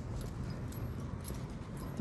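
Outdoor street background noise: a steady low rumble with a few faint ticks.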